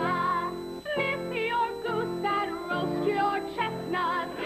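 A group of young female voices singing a Christmas carol together, with wavering held notes over instrumental chords that change about once a second.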